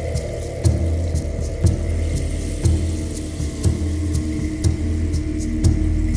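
Slow ambient music: a low steady drone with a deep pulse about once a second and faint sharp ticks above it.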